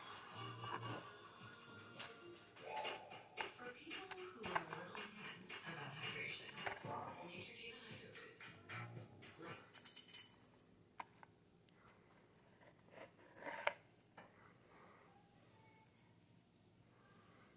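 Faint background music and voices for the first ten seconds or so, then near quiet broken by a few light clicks and taps.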